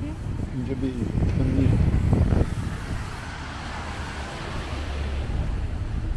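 Road traffic passing on a wet road: a low engine rumble, loudest about two seconds in, then a steady hiss of tyres on wet asphalt.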